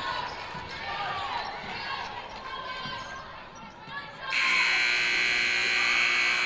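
Sneakers squeaking and a basketball dribbling on a hardwood gym floor amid crowd voices. About four seconds in, the gym's scoreboard horn sounds, loud and steady, for about two seconds.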